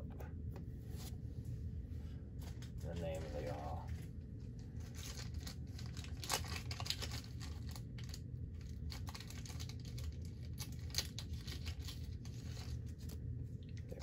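Crinkling and tearing of packaging, with scattered small rustles and clicks throughout.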